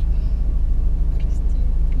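Steady low hum of a car heard from inside its cabin, typical of the engine idling while the car stands still.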